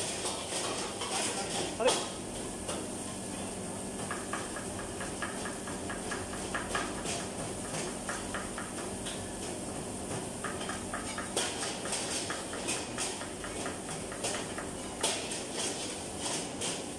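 Kitchen knife chopping on a plastic cutting board: quick, even strokes in runs, with a steady kitchen hum underneath.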